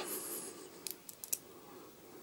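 Small neodymium magnet balls clicking together as they are pressed into place, with a quick cluster of about five light clicks about a second in.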